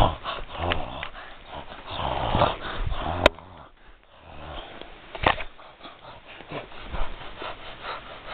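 A person voicing a dog play fight with breathy snorts, sniffs and growl-like noises, mixed with rustling as plush toy dogs are pushed together on a blanket. Two sharp knocks stand out, about three seconds in and again about five seconds in.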